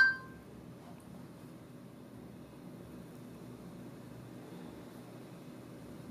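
A short electronic two-tone beep from the Moto E smartphone's speaker, the Google voice search tone as it stops listening after a spoken command. It dies away within the first half second, leaving only a faint steady room hiss while the phone processes the request.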